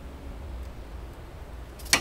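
Low, steady background rumble with no music, then a single sharp snap or knock near the end.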